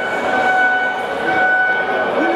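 A steady, high, horn-like tone with overtones, held unbroken over a background of crowd voices.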